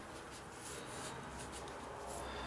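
Faint brush strokes on watercolour paper: a soft rubbing and swishing of a loaded brush being worked across the paper.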